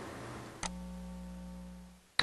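A single computer mouse click about two-thirds of a second in, submitting code to the CSS validator. A faint, steady electrical hum follows and cuts off near the end.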